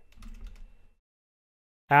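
Faint computer keyboard keystrokes for about the first second, then dead silence.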